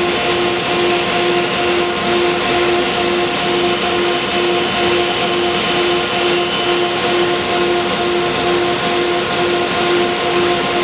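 Floor-standing bandsaw running and cutting through a hardwood board, a steady mechanical hum that pulses about twice a second over the hiss of the cut.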